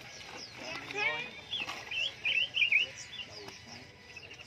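Caged songbirds chirping, with a quick run of warbling notes from about a second and a half in to near three seconds, over low background voices.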